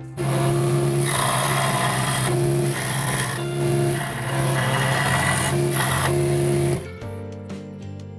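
Record Power scroll saw switched on and cutting through a wooden tsuba (sword guard) to split it in two: a steady motor hum with a rasping blade, a higher tone coming and going as the blade works through the wood. It starts right at the beginning and stops about seven seconds in.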